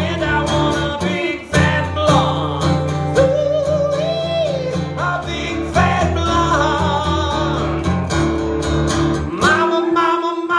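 A man singing a song live while strumming an acoustic guitar.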